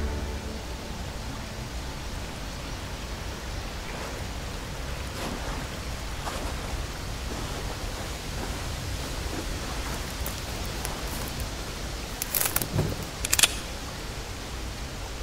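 Steady outdoor ambient hiss, even and without pitch. Near the end a few sharp clicks and knocks come in quick succession.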